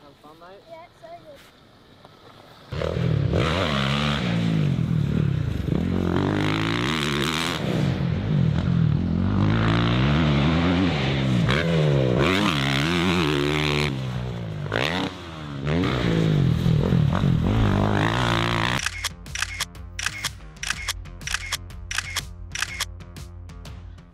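Motocross dirt bike engine revving up and down over and over as it is ridden hard around the track, starting suddenly about three seconds in. Near the end it gives way to music with a quick, even beat.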